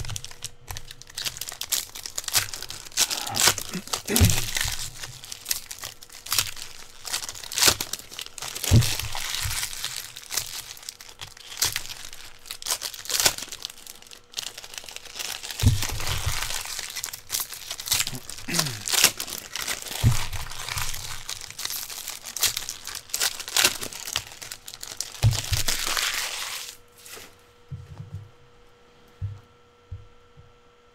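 Foil and plastic wrappers of trading-card packs being torn open and crumpled: a dense, irregular crinkling with sharper tearing strokes, which stops near the end and leaves a faint electrical hum.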